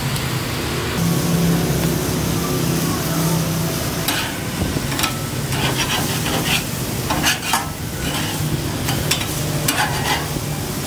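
Beef burger patties sizzling on a gas char grill over a steady low hum, with a metal spatula scraping and clicking against the grate in short bursts through the second half as the patties are turned.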